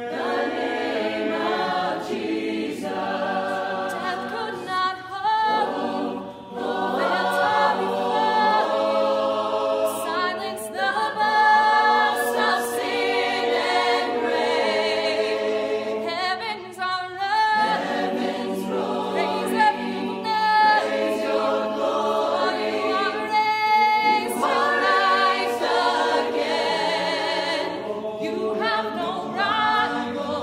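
A choir singing sustained chords in long phrases, with short breaks between phrases about 6 and 17 seconds in.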